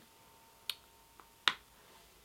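Three small sharp clicks in a quiet room, the last and loudest about a second and a half in.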